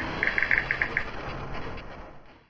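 Sound effect for an animated logo: quick clusters of high, chirping digital blips over a noisy rumble. The blips stop about a second in and the rumble fades away.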